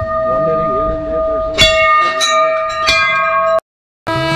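Brass temple bells struck by hand and left ringing. A bell's long, steady tone carries on from a strike just before, and fresh strikes about a second and a half, two, and three seconds in set further bells ringing. The sound cuts off abruptly near the end.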